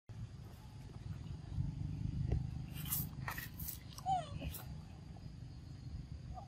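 Baby macaque giving a few short, squeaky arching calls about four seconds in. Just before the calls there are several sharp scuffling and rustling noises as an adult macaque grabs and handles it.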